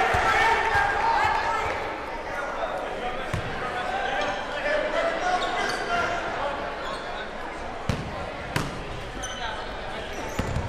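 A basketball bouncing on a hardwood gym floor against a steady, echoing chatter of players and spectators, with two sharp bounces about eight seconds in. Short high sneaker squeaks on the hardwood come near the end as players start to run.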